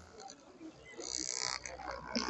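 Handheld electric massager running against a forearm with a faint, steady low buzz that comes up about a second in. Faint voices sound in the background.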